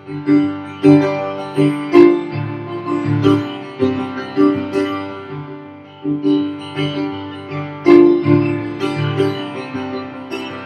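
Solo piano playing an instrumental passage of struck chords and melody notes, each attack ringing and then fading, with no singing.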